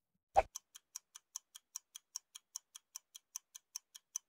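Clock-ticking sound effect: one louder click, then fast, even ticks about five a second.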